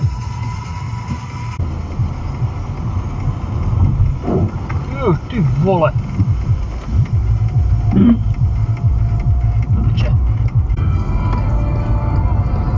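Car cabin sound while driving: a steady low road and engine hum, with music and a short stretch of voice about four to six seconds in.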